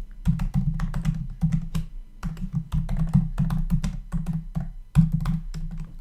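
Computer keyboard typing, a quick, steady run of keystroke clicks as a terminal command is entered.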